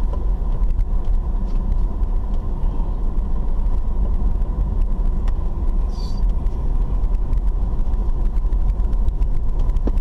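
Car driving along an unpaved dirt road, heard from inside the cabin: a steady low rumble of engine and tyres, with many small ticks and rattles and a faint steady high tone.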